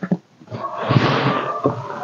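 A long rush of breath at the open end of a PVC pipe, with a faint hollow tone from the tube, preceded by a small click.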